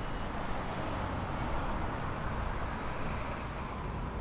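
Steady street traffic ambience: an even wash of road noise.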